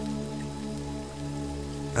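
Soft ambient music of steady held tones, layered with the sound of falling rain.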